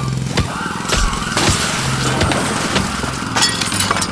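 Loud, continuous racket of crashing and shattering, like glass and crockery breaking, with sharper crashes about one and a half seconds in and near the end.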